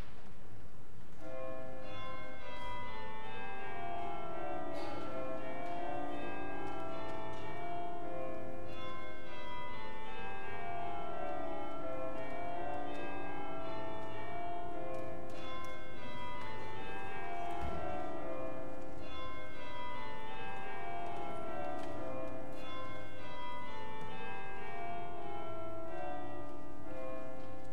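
Church carillon pealing: runs of bell strokes that step down the scale, repeated every several seconds, each bell ringing on under the next.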